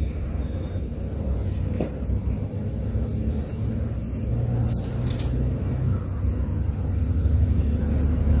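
Pages of a Bible being leafed through: a few faint rustles and taps over a steady low rumble.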